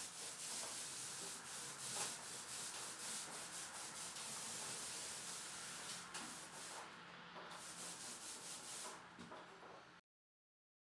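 Small 4-inch paint roller rolling wet paint over vinyl wallpaper: a soft, hissing rub with repeated strokes, briefly easing off about seven seconds in and fading near the end.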